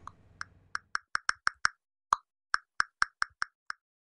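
Typing sound effect for on-screen text: a run of about fifteen short, clicky pops at an uneven pace, stopping shortly before the end.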